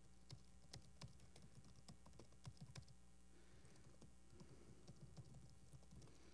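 Faint laptop keyboard typing: irregular, quick key clicks as shell commands are entered, over a steady low electrical hum.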